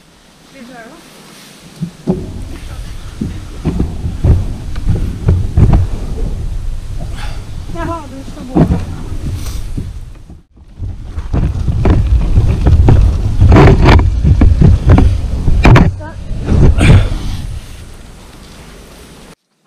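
A kayak hull being dragged over a grass lawn, heard through a camera mounted on its bow: a loud, rough rumbling scrape with many knocks and bumps, which stops briefly about ten seconds in and then resumes.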